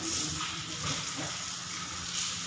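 A steady hiss.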